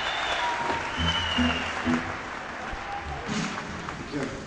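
Live concert audience applauding at the end of a rock song, with a few short low notes from the band's instruments about one to two seconds in.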